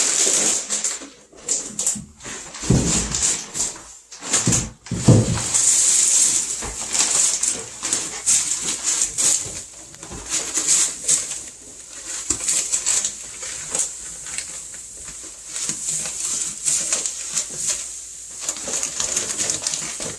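Pine wood shavings and their plastic bag rustling and crinkling as the shavings are scooped out and poured into a wooden brooder crate as bedding, with a few dull thumps in the first five seconds.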